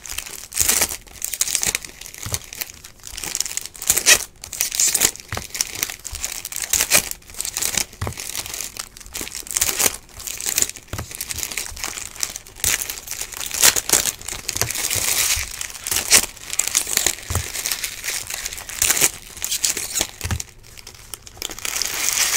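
Wrappers of 2015 Topps Valor Football trading-card packs crinkling and tearing as the packs are opened, an irregular run of crackles.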